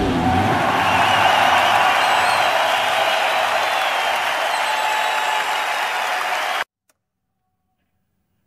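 Applause from a live audience, a dense steady clapping that cuts off suddenly about six and a half seconds in, leaving silence.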